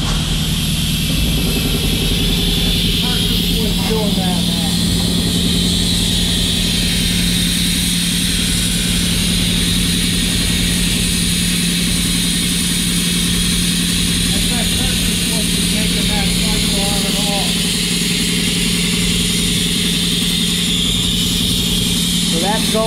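Ship's engine-room starting air compressor running steadily and loud: a constant low hum under a hiss, with no change in speed or load.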